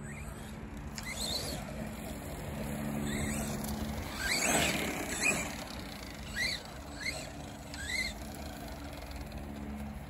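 Arrma Big Rock 3S RC monster truck driving across grass, its brushless electric motor whining in short rising and falling bursts as the throttle is worked, with a louder swell near the middle.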